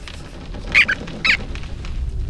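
Two short high-pitched squeaks from cartoon rodents, about half a second apart, over a low steady background rumble.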